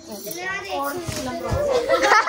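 Several people, children among them, talking over one another in a lively family crowd, with a dull bump about one and a half seconds in.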